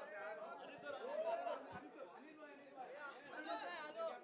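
Quiet, indistinct chatter of several people talking over one another, off-microphone.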